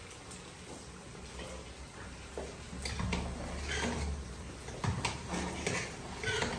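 Kitchen stove sounds: a steady hiss from lit gas burners and chicken frying in a wok, with a few sharp clinks of a metal ladle against a pot in the second half.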